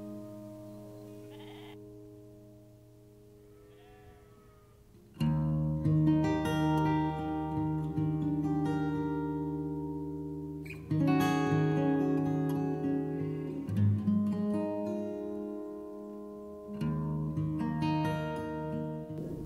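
Background music led by acoustic guitar: quiet held notes at first, then plucked guitar coming in much louder about five seconds in. A sheep bleats once, faintly, about four seconds in, during the quiet stretch.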